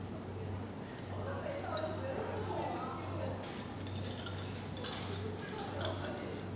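Metal cocktail shaker and ice clinking against a Collins glass as the shaken drink is poured into it, with several sharp clinks in the second half. A steady low hum runs underneath.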